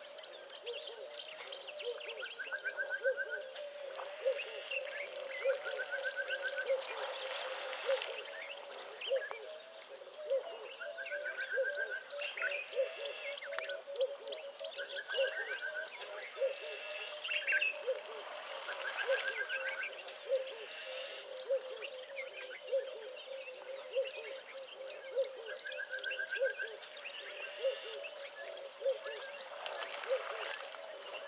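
Natural chorus of birds calling, with one short trilled call repeated about every three to four seconds and scattered higher chirps, over a steady pulsing chorus in the background.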